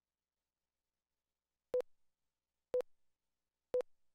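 Countdown leader beeps on a programme segment slate: three short, identical, pitched beeps exactly one second apart, starting a little under two seconds in.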